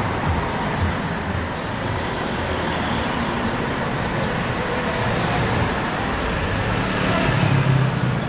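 Town-centre street traffic: cars running along the road, with a steady rumble and hiss. Near the end a low engine hum swells as a car comes close.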